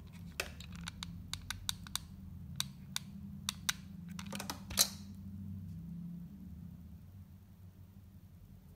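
A string of light clicks and taps from hands handling a metal snap hair clip and small craft pieces at a table. There are about a dozen sharp clicks over the first four seconds, then a quick cluster with the loudest tap about five seconds in, over a low steady hum.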